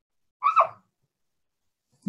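A man's short breath about half a second in, with silence the rest of the time.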